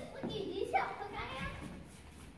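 Children's voices: a child speaking briefly, words unclear, fading out after about a second.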